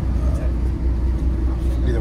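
Steady low drone of a parked double-decker coach with its engine running, heard from inside the cabin, with faint voices of passengers over it.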